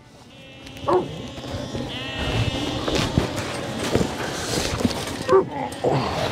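Lambs bleating, with short calls about a second in and again near the end.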